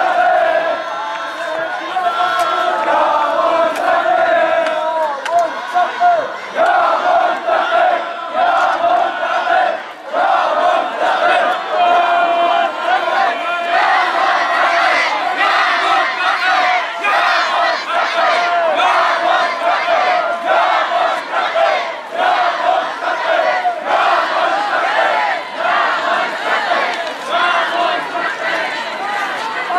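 A large crowd of men chanting and shouting together, loud and continuous, with a brief lull about ten seconds in.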